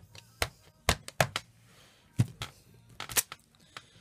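A stamp being dabbed on an ink pad and pressed down onto paper: about ten short, sharp taps and knocks at uneven spacing.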